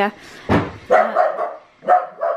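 Pet dogs barking in the background, a few short barks in quick succession: the dogs going absolutely bonkers.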